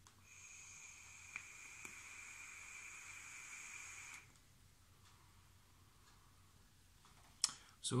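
Air being drawn through a rebuildable tank atomizer on a vape mod: a steady, faint hiss with a thin whistle through the airflow holes for about four seconds, with two small clicks partway through.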